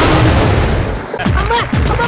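Go-kart engine and tyres skidding on asphalt as the kart drifts sideways, a dense rush with low rumble. About a second in this gives way to an edited-in sound effect of several falling, booming tones.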